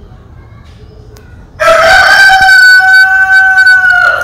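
A rooster crowing loudly: one long call that starts suddenly about a second and a half in and holds a steady pitch to the end.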